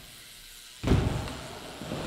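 A BMX bike landing on a ramp about a second in: a sudden hard impact of the tyres, then tyre rolling noise that fades.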